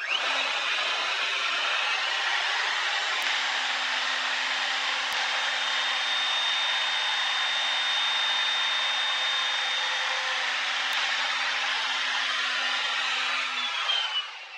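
Plunge router spinning up and running steadily with a high whine as it cuts a tenon in a wooden workpiece through a template-guided tenoning jig, starting to wind down at the very end.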